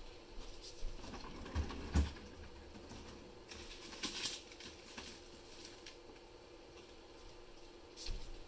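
Faint rummaging in a freezer: scattered light knocks, a thump about two seconds in and a rustle about four seconds in, over a low steady hum.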